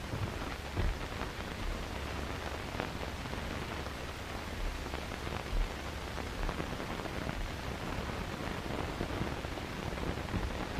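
Steady hiss of an early-1930s optical film soundtrack, with a low hum underneath and a few faint crackles, while no one speaks.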